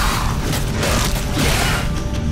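Cartoon sound effects of a toy dart blaster firing in quick succession while rock breaks apart: several loud, sharp, noisy bursts about half a second apart over a low rumble.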